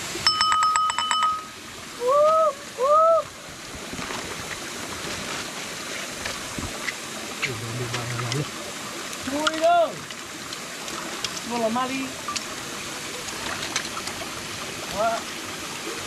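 Creek water running steadily. Short vocal exclamations come over it, and a rapid train of clicking, ringing sounds is heard in the first second.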